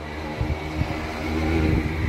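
Wind buffeting the microphone outdoors: a low, uneven rumble that comes in gusts and grows louder, over a faint steady hum.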